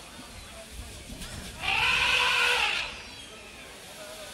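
Market ambience with a low murmur of voices, and a single loud animal call near the middle, lasting a little over a second, rising and then falling in pitch.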